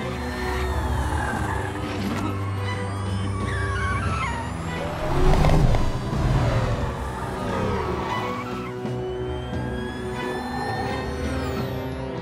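Film score music over car-chase sound: car engines running and tyres squealing, with sliding pitches, loudest about halfway through.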